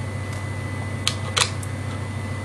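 A few sharp plastic clicks about a second in, over a steady low hum, as a stalled Hornby model locomotive is wiggled by hand on its rolling-road rollers. The loco is not running: its wheels are not making proper contact with the rollers.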